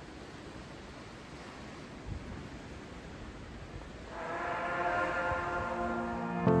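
Steady rush of wind and churning sea water, with a single faint knock about two seconds in. About four seconds in, background music enters as held chords that swell.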